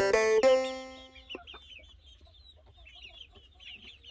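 Young lavender Ameraucana chickens peeping softly, many short high chirps in quick succession. A music tune fades out in the first second.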